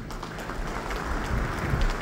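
An audience applauding: a steady wash of many hands clapping together that swells slightly near the end.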